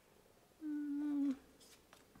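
A woman humming one steady note for under a second, starting about half a second in, over quiet room tone.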